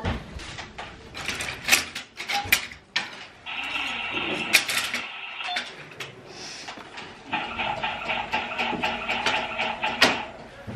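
Objects being handled and moved about on a table. A run of sharp clicks and knocks comes first, then a steady, fluttering squeak about three and a half seconds in, and again through the last few seconds.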